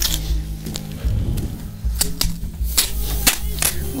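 A scatter of sharp clicks and crackles, most of them in the second half, from hands working adhesive tape and hanging decorations on a wall, over steady background music.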